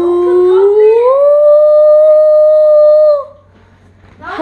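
A boy's voice holding one long 'ooo' note that slides up about an octave about a second in, stays steady, then stops about three seconds in.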